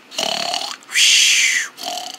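A person's voice singing a short "dun dun", then a loud, rough vocal noise about a second in, made with the mouth as a sound effect.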